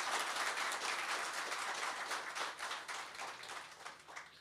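A crowd applauding, many hands clapping together, slowly dying away near the end.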